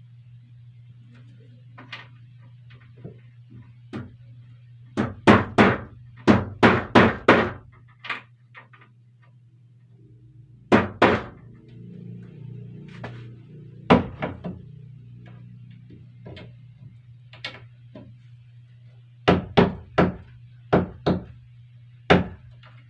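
Hammer striking nails into a wooden wall panel, in runs of several quick blows with pauses between, over a steady low hum.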